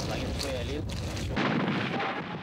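Steady background noise, then about one and a half seconds in a sudden loud blast of weapon fire.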